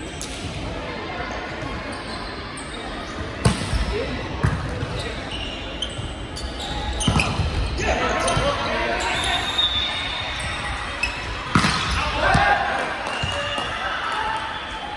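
Volleyball rally in a large echoing sports hall: the ball is struck sharply by hands several times, the loudest hits about three and a half seconds in and near the end. Players shout and call during the rally.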